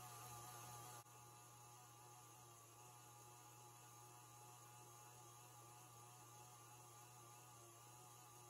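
Faint, steady hum of a KitchenAid stand mixer's motor running as its whisk beats instant-coffee cream in a steel bowl. It drops slightly quieter about a second in.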